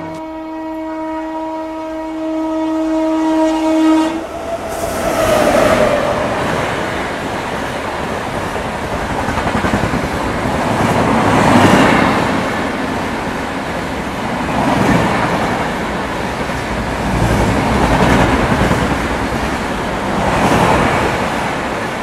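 A locomotive horn held for about four seconds as the Secunderabad Rajdhani Express approaches, then the rush and rattle of the express train passing at speed, its wheel clatter swelling and fading several times.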